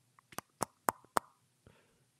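Knuckles knocking on a head: four short, sharp knocks about a quarter of a second apart.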